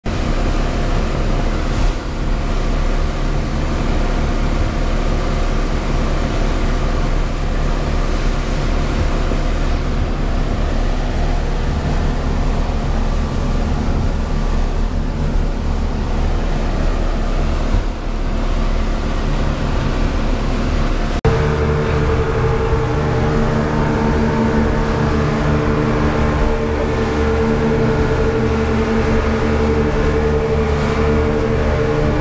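A fast boat's three outboard motors running steadily at speed, with rushing water and wind. About two-thirds of the way through, the sound cuts abruptly to a different mix in which a stronger, steady engine hum dominates.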